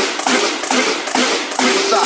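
Electro-house dance track in a short break: the synth line drops out, leaving sharp percussion hits about four a second.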